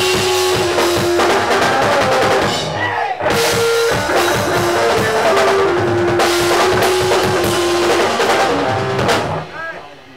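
Live rock band, amplified electric guitar and drum kit playing loud. There is a short break about three seconds in, and the song ends about nine seconds in, its last chord dying away.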